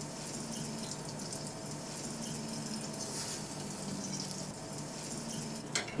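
Banana pieces frying in a pan of hot oil: a steady sizzle.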